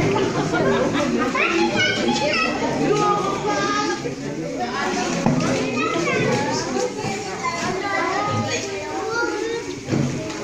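Many children talking and calling out at once in a crowded room, their high voices overlapping with adult chatter, with no single voice standing out.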